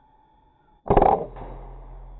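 A single sharp report from an air rifle fired about a second in, followed by a short decaying tail; the shot hits the turtledove it was aimed at.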